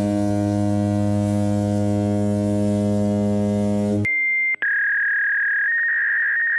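A low, buzzy electronic tone held steady for about four seconds, then cut off. A short high beep follows, then a long, steady, thin high tone like one heard down a phone line.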